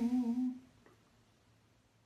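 A man's voice holding the last sung note of a song, steady in pitch, which fades out about half a second in, leaving near silence.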